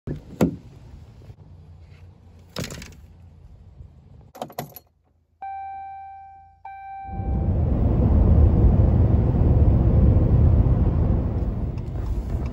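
Ram pickup truck door handle and latch clicking open, then a few knocks and rattles as the driver gets in, followed by two dashboard chime tones a little over a second apart as the ignition comes on. From about seven seconds in, the truck's engine and road noise rise and stay loud and steady.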